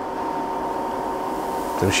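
Romi M-20 CNC/manual combination lathe running, giving a steady machine hum of several even tones.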